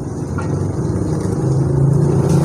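A motor vehicle's engine running: a steady low hum that grows louder in the second half.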